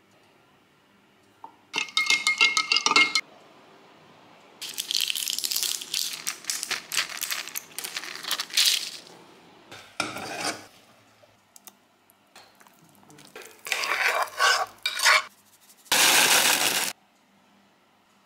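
A string of short kitchen sounds: a rapid clinking rattle with a ringing tone about two seconds in, then a long stretch of stirring and scraping, clatters of a pot and utensils, and a brief steady hiss near the end.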